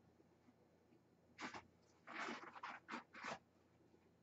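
Near silence broken by a cluster of short, faint scratchy rustles: one about a second and a half in, then four more close together between two and three and a half seconds in.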